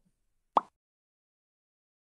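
A single short, soft pop about half a second in, with silence before and after it.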